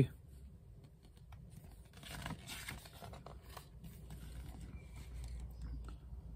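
Faint rustling and crinkling of paper as a paperback picture book's page is turned and the book is handled, strongest from about two seconds in.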